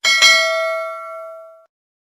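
Notification-bell 'ding' sound effect of an animated subscribe button: a single bright bell strike that rings with several high tones and fades out over about a second and a half.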